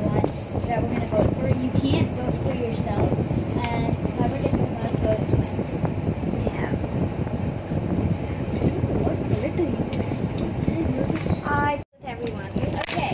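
Indistinct girls' voices murmuring over a steady low rumble of room and microphone noise, with a brief sudden dropout near the end.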